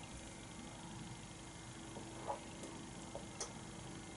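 Quiet room tone with a faint steady hum and a few soft ticks, one a little over two seconds in and a sharper one at about three and a half seconds.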